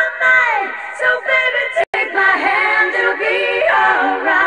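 A recorded pop song with a female lead vocal singing a gliding melody. The sound cuts out for an instant about halfway through.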